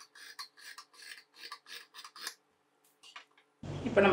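Tailor's scissors cutting through folded cloth, a quick run of snips about four a second that stops about two and a half seconds in, with two last snips shortly after.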